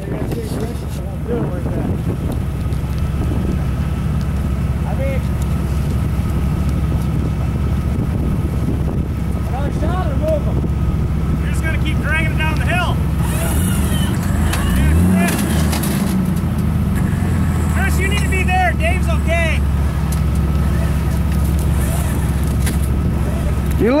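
Off-road vehicle engine idling steadily, with one brief rise and fall in revs a little past halfway.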